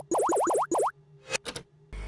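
Cartoon sound effects for an animated logo intro: a rapid run of about five rising, springy boings in the first second, then a few short pops.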